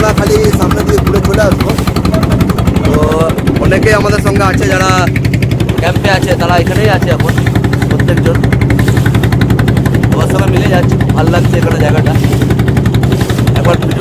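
Wooden boat's engine running with a fast, even pulse, with people's voices aboard over it.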